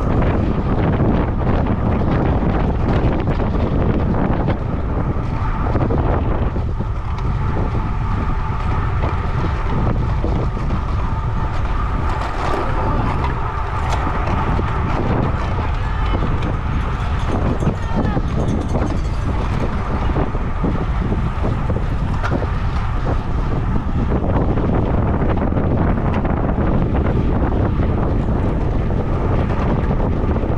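Steady wind noise on a bike-mounted camera microphone from a road bike moving at about 20 mph, heavy and low-pitched throughout.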